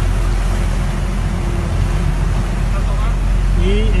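A boat's engine running steadily, a loud, even low rumble.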